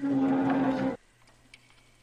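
A loud, low buzzing tone lasts just under a second and cuts off abruptly. A faint steady low hum follows.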